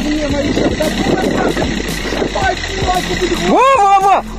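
Men in an outdoor protest crowd talking over one another against a steady background noise, with one man letting out a loud, drawn-out shout that rises and falls in pitch near the end.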